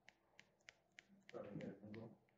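A run of faint, sharp clicks, about three a second. From about a second and a half in, a faint, distant voice answers off-microphone.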